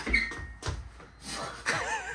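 Sharp metallic clicks and knocks of hand tools working on the engine, with a brief squeak just after the first knock. A person begins to laugh near the end.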